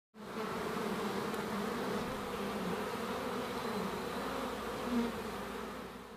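Honeybees buzzing: a steady hum of many bees with a wavering pitch, swelling briefly about five seconds in and fading near the end.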